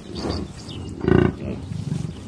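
Bison grunting: a few deep, short grunts, the loudest about a second in.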